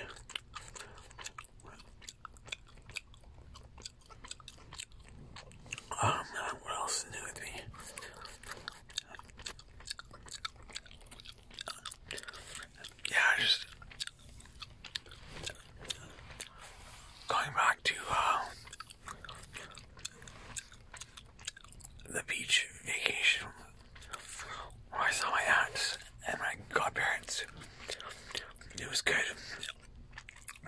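Gum being chewed close to the microphone: a steady run of small wet clicks and smacks, with several louder stretches of a second or two.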